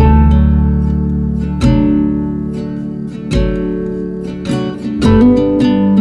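Acoustic guitar played slowly: a full chord is struck about every second and a half and left to ring, with single notes picked between the chords.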